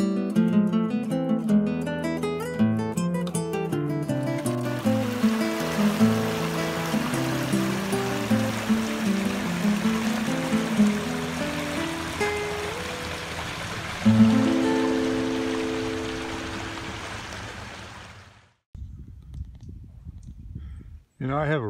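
Acoustic guitar music, plucked, with the steady rush of a flowing creek mixed in from about four seconds. The music ends on a held chord that fades out near the end.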